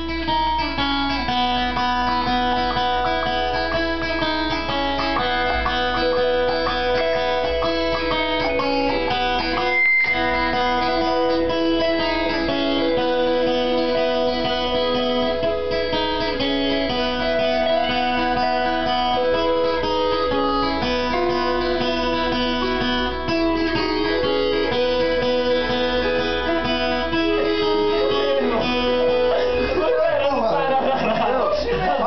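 Guitar music: plucked notes forming a continuous melody, with a brief dropout about ten seconds in.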